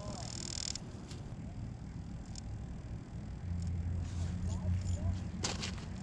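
Wind rumbling on the microphone, stronger in the second half, with a few faint clicks and a sharper knock near the end.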